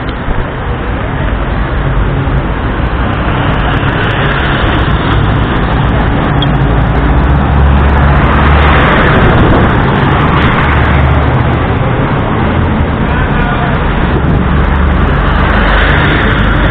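City street traffic with a large bus's diesel engine running close by, its rumble loudest about eight to eleven seconds in as it passes; a minibus goes by near the end.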